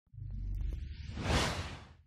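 Whoosh sound effect of an animated logo intro: a low rumble sets in just after the start, then a rushing swoosh swells to a peak about two thirds of the way through and fades away near the end.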